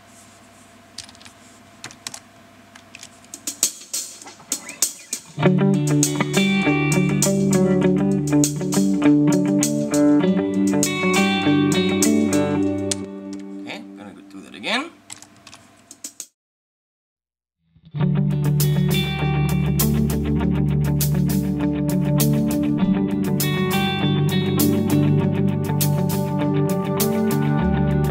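A few computer keyboard and mouse clicks, then playback of a multitrack song arrangement with electric guitar, starting about five seconds in. It cuts out for about a second and a half a little past the middle, then starts again.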